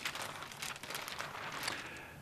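A large flip-chart paper sheet rustling and crinkling as it is lifted and turned over on its easel: a faint, crackly run of small paper ticks that thins out near the end.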